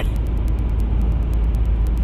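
Steady low rumble with a hiss, the continuous background noise under the talk, with a faint fast ticking at about eight ticks a second.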